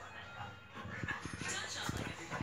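Two bulldogs play-fighting, with short dog noises and scuffling, over a television playing speech and music.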